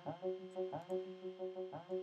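Ableton Live's Operator synth on the Brass-Brassy Analog preset, played by the PolyArp arpeggiator: a repeating pattern of held brassy synth notes, several starting with a short upward swoop in pitch.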